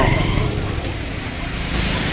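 Road traffic on a rain-wet street: a steady hiss of tyres and rain, with a low engine hum coming in near the end.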